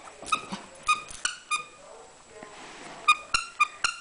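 Brussels griffon giving a series of short, high whimpers at a steady pitch, in small clusters about a second in and again near the end.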